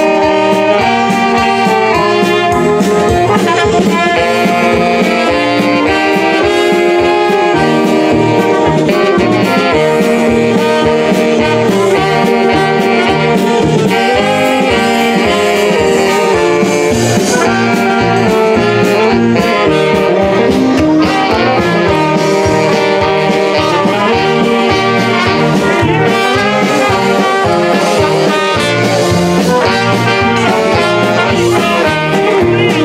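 A live polka band playing an instrumental passage at a steady loud level: piano accordions, trumpet and saxophones over an electronic drum kit.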